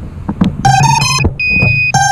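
Racing quadcopter's electronics beeping a short run of stepped electronic tones, then one long higher beep, over a steady low hum: the kind of startup and arming tones a quad's motors and ESCs play before takeoff.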